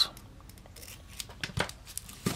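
Hobby knife blade cutting the plastic shrink-wrap on a small deck of cards: faint scratching and a few small clicks, with a sharper cut about one and a half seconds in.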